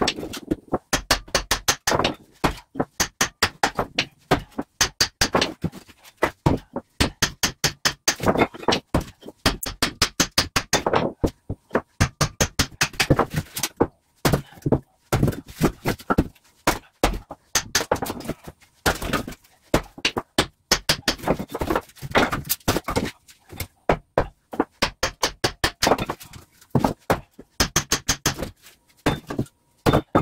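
Axe chopping and splitting short logs into kindling: quick runs of sharp knocks, several a second, broken by short pauses.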